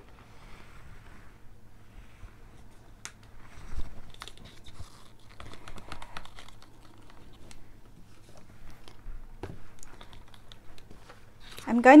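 Faint clicks and rustling from gloved hands handling plastic paint cups and bottle bottoms, with one louder bump about four seconds in. A woman starts speaking at the very end.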